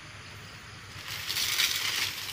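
Rustling of dry leaves and vegetation, growing louder about a second in.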